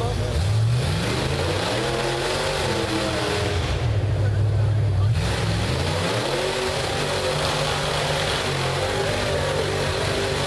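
Rock bouncer buggy's engine revving up and down in repeated surges as it climbs a steep rock hill, held high for a second or so in the middle.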